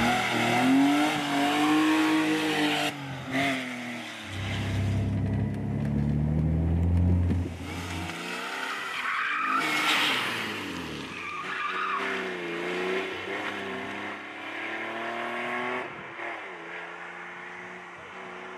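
A BMW E30 with a swapped-in E36 2.5-litre 24-valve straight-six engine revving hard, its pitch climbing and dropping several times, while its tyres squeal as the car slides. The sound fades near the end as the car pulls away.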